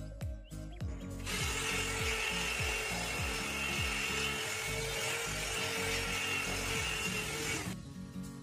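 Electric car polisher with a foam pad running against painted bodywork, machine-polishing the paint. The whir starts about a second in and cuts off near the end, over background music.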